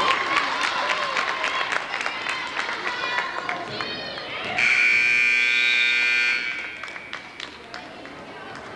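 Gym scoreboard horn sounds one steady blast lasting under two seconds, about halfway through, the loudest thing here, signalling a stoppage in play. Before it, spectators' voices and the squeaks and knocks of play on the hardwood court.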